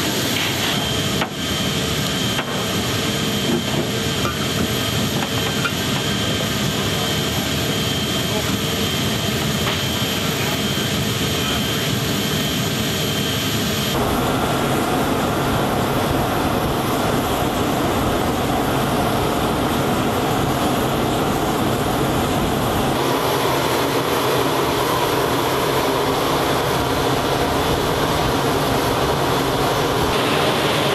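Steady jet aircraft noise around a C-17 Globemaster III, a constant rush with a faint high whine at first. It changes character abruptly about 14 and 23 seconds in, as the sound cuts between shots.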